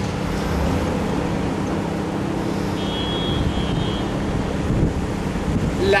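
Steady low city background rumble of street traffic, with wind on the microphone and a steady low hum underneath. A faint high-pitched whine comes in briefly around the middle.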